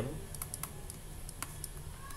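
Irregular light clicks and taps of a pen stylus on a writing tablet while handwriting is written, over a faint low steady hum.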